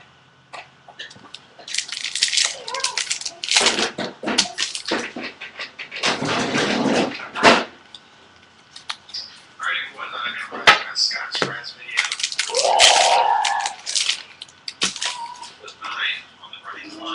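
Handling of opened baseball card packs: wrappers crackling and cards sliding against one another as a stack is flipped through by hand, in irregular bursts with a few sharp clicks.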